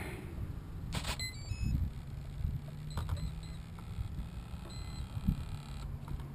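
The battery connector snaps together about a second in, and the brushless motor's 30 A ESC plays its power-up tones through the motor: a quick run of short beeps at stepping pitches. Single short beeps follow around three seconds and again near five seconds.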